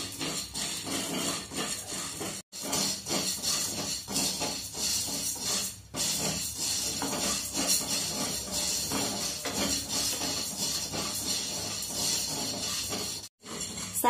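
Tapioca pearls being dry-roasted in a kadhai and stirred with a wooden spatula: a continuous scratchy rattle of the pearls sliding against the pan. The rattle is broken by two brief cuts to silence, about two and a half seconds in and near the end.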